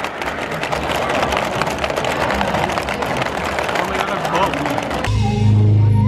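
Rapid plastic clacking of a Hungry Hungry Hippos game, its hippo levers being hammered and marbles rattling, over chatter and laughter. About five seconds in it cuts to a band playing, with a loud, steady bass.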